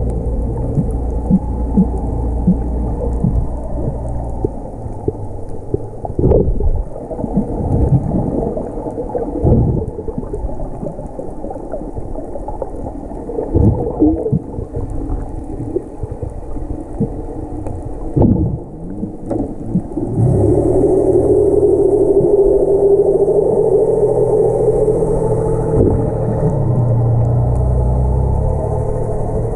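Muffled underwater sound picked up by a camera held in the water: a low rumble with scattered short knocks and thumps. About two-thirds of the way through, a steadier, louder low hum with a wavering pitch joins in.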